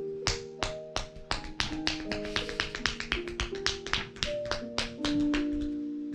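Quick percussive strikes of a masseuse's hands on bare neck and shoulders, crisp slaps about four a second, over soft background music with slow held notes.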